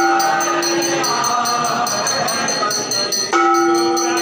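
Temple aarti music: voices singing together, with a long held note at the start and again from about three seconds in, over fast, steady ringing of metal temple bells.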